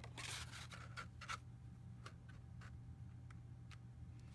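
Faint handling sounds of cardstock being slid into a plastic Stampin' Up! Cat Punch: a soft paper rustle at the start, then several faint light clicks and taps as the paper is lined up in the punch.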